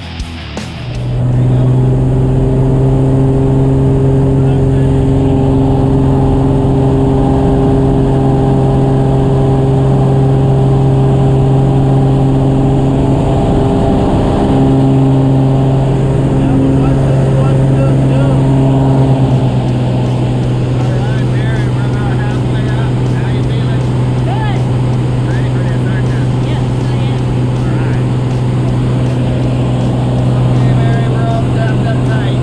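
Single-engine propeller plane heard from inside the cabin, a loud, steady drone that comes in about a second in and holds through the takeoff roll and climb.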